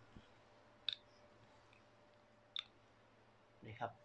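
Two short, sharp clicks about a second and a half apart, over a faint steady hum.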